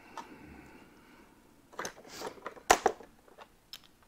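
A handful of light knocks and rustles, about two to three seconds in, from sheets and boards being handled on a wooden workbench.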